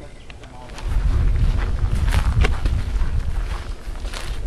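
Low rumble on the handheld camera's microphone with scattered footfalls and knocks as the camera is carried quickly along a dirt trail, starting about a second in.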